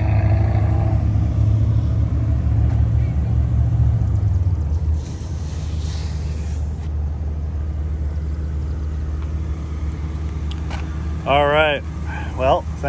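A low, steady car rumble, louder for the first five seconds. About five seconds in, a hand brushes across a fabric convertible soft top for a little under two seconds.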